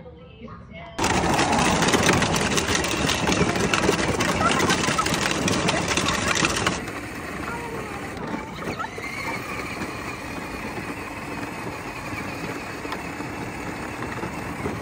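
Children's battery-powered pink Barbie ride-on Jeep driving on asphalt, its small electric motor whining steadily under the rumble of its plastic wheels; its owner fears the battery is close to dying. A louder rushing noise fills the first several seconds and cuts off suddenly.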